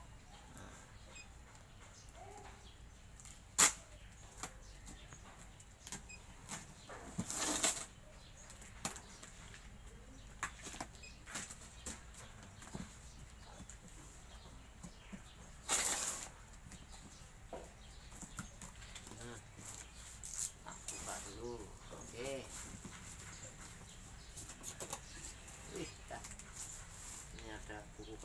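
A cardboard box being opened with a cutter knife: scattered clicks and scrapes, with two short bursts of packing tape being slit or torn about 7 and 16 seconds in. Near the end, plastic packaging rustles as the box's contents are lifted out.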